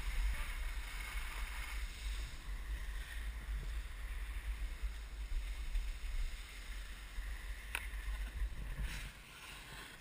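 Skis or a snowboard sliding and scraping over packed snow as a steady hiss, with wind buffeting the camera microphone as a low rumble; one sharp click about eight seconds in, and the sound drops off near the end as the rider slows to a stop.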